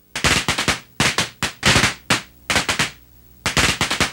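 Popcorn popping sound effect: loud, sharp pops coming in quick irregular clusters, several a second, with a brief lull about three seconds in.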